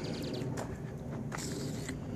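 Footsteps on asphalt, a few soft scuffs, over a low steady outdoor hum.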